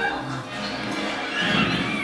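Film soundtrack playing from a Samsung television's speakers: music, with a louder sliding high-pitched call that rises and falls starting about one and a half seconds in.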